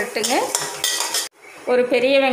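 A steel spoon scrapes and clinks against a stainless steel kadai, stirring mustard seeds and split dal in hot oil for a tempering. It stops abruptly a little past halfway.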